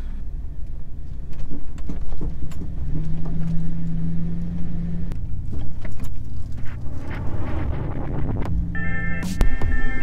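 Vehicle engine running with a steady low rumble, heard from inside the cab, with scattered clicks and knocks. Electronic music comes in near the end.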